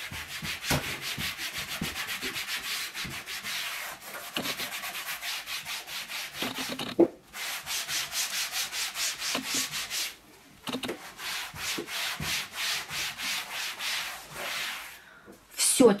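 A microfiber cloth with a mesh scouring side is rubbed hard back and forth over a laminate panel in quick, scratchy strokes, scrubbing off a sticky grease film that the spray has softened. There are brief pauses about seven and ten seconds in, with one sharp knock at the first pause.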